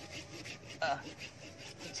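Hand pruning saw cutting through the wood of a bonsai trunk in a run of quick back-and-forth strokes.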